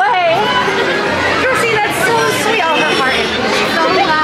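People talking, with chatter from the crowd around them.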